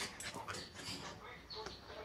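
A dog whining and making short vocal noises while playing excitedly.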